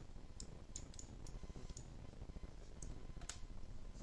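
Faint computer mouse clicks, about seven scattered irregularly, the clearest a little past three seconds in, over a low background rumble.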